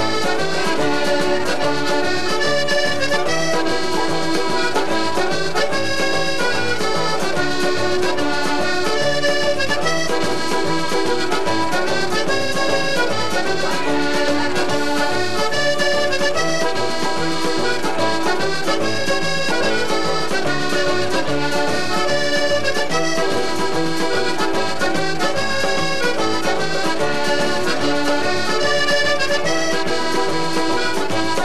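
Accordion playing an instrumental dance tune, backed by a band with a steady bass and drum beat.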